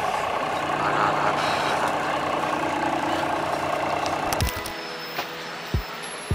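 Double-decker bus engine running at idle, heard from inside the bus as a steady low drone with traffic noise. About four and a half seconds in it cuts to background music with a few soft low beats.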